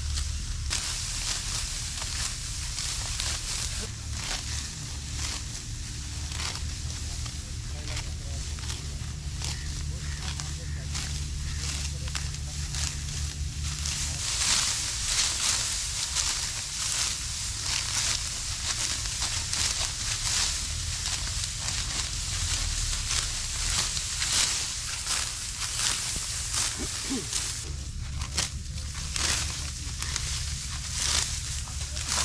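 Dry, ripe wheat stalks crackling and rustling as they are cut and gathered by hand, a dense run of short crunching strokes, busiest in the second half.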